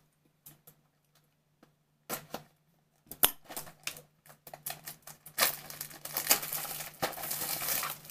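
Packaging being handled: a few scattered light clicks and taps, then from about five seconds in a continuous crinkling and tearing of wrapping.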